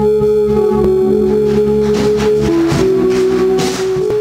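A live church band plays an instrumental passage: sustained organ-style keyboard chords over electric bass, with the chord changing about halfway through and light cymbal swells near the end.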